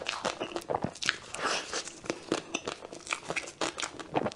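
Close-miked biting and chewing of a cocoa-dusted chocolate egg cake: the thin chocolate shell snaps and crackles in many irregular sharp clicks as teeth break through it, with soft chewing of the cream filling between.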